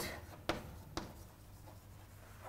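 Chalk writing on a chalkboard, faint, with two sharp taps of the chalk against the board about half a second apart.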